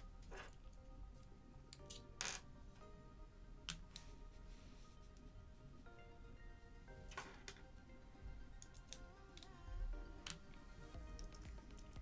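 Quiet background music with long held tones, over which a handful of faint, separate clicks and taps from small tools handling the open watch come through.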